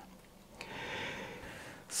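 A person breathing between sentences: a soft, drawn-out breath, then a quick sharp in-breath just before speaking again.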